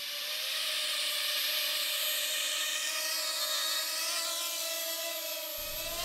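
Quadcopter drone's propellers and motors whining as it lifts off the grass and climbs: a steady buzzing hum with a clear pitch, swelling over the first second.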